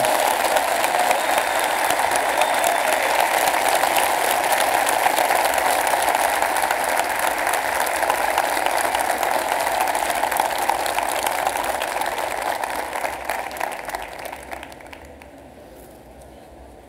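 A large audience applauding, a dense steady clapping that fades away near the end.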